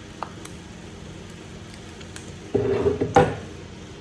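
Handling noise of a metal brake master cylinder and its pushrod: a few light clicks, then a brief squeaky rubbing about two and a half seconds in, ending in a sharp knock as the cylinder is set down on the table.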